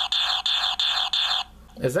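The small speaker of a 1991 G.I. Joe Super Sonic Fighters toy backpack plays a buzzy, tinny electronic gunfire effect: a fast, even rattle of noisy pulses that stops abruptly about one and a half seconds in. By elimination it should be the 50-caliber machine gun sound, though it does not sound like one at all.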